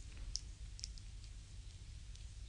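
A foot massage: fingers squeezing and working the slick, creamed skin of a big toe, giving a handful of small moist clicks, the sharpest about a third of a second in, over a low steady hum.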